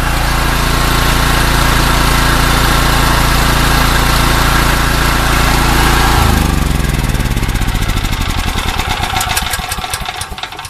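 Portable generator's gasoline engine running steadily just after being pull-started, its clogged carburetor freshly cleaned. About six seconds in it is switched off and winds down, its pitch falling and its firing pulses fading away.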